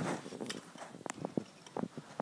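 Handling noise from a plastic Lego buildable figure with a cloth cape being turned over in the hand: a soft rustle at first, then several light clicks and taps.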